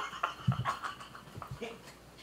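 Several men laughing helplessly, mostly silent laughter that comes out in short breathy bursts, thinning out and fading toward the end.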